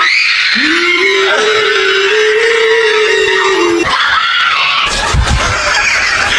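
A woman screaming one long, held scream that stops abruptly about four seconds in. A shorter cry follows, then music near the end.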